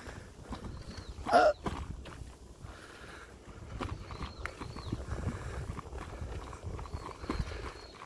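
Irregular knocks and rattles of a bicycle rolling over stone paving slabs, over a low rumble. A brief loud sound that rises in pitch comes about a second and a half in.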